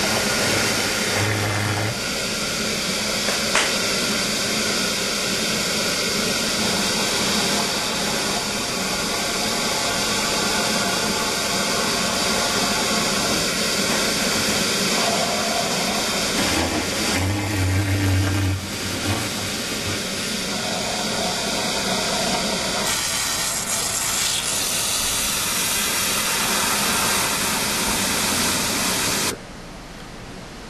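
Minuteman 705 series compressed-air venturi vacuum running with a loud, steady hiss while it sucks water up a pickup tube out of a 50-gallon drum. The sound cuts off suddenly near the end.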